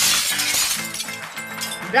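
A sound effect of shattering glass, loud at first and fading out over about a second, over background music.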